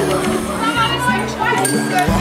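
Music with held bass notes stepping from one pitch to the next, over the voices of many children chattering.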